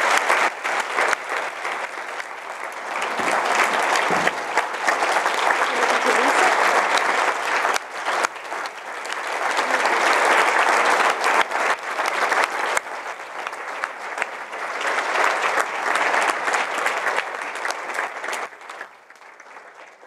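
Conference audience applauding at length after a keynote speech, the clapping swelling and easing a couple of times before dying away near the end.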